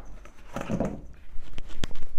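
Floured meatballs tumbling and knocking in a plastic colander set in a metal bowl as it is shaken to sift off the excess flour: soft, irregular thuds starting about one and a half seconds in, with a couple of sharper knocks near the end.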